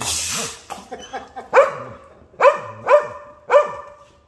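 Belgian Malinois barking at a push broom: a few short yips, then four loud barks about half a second apart. A wet swish of broom bristles pushing water across the concrete floor comes at the very start.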